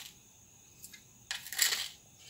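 Salt being tipped into a pot of rice and lentils in water: a couple of faint ticks, then a short gritty rattle lasting about half a second, near the end.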